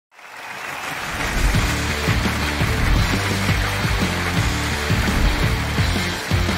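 Game-show intro theme music fading in, with a steady bass beat of about two pulses a second under a dense wash of sound.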